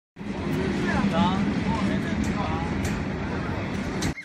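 Passenger train coaches rolling past close by, a loud steady rumble with a low hum, with voices heard over it.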